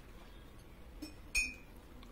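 A single short, ringing clink about one and a half seconds in, with a fainter tap just before it.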